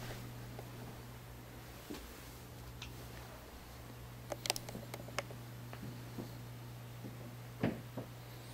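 Quiet indoor room tone with a steady low hum, and a few faint short clicks about four to five seconds in and again near the end.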